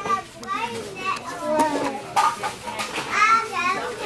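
Young children's high-pitched voices chattering and calling out while they play, with a few light knocks.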